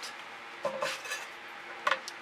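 A few clinks and knocks of hard objects being handled on a work table, with a sharp click near the end.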